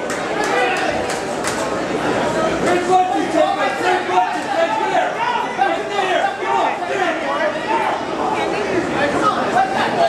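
Spectators' voices in a hall, many people talking and shouting over one another, with a few sharp smacks mixed in.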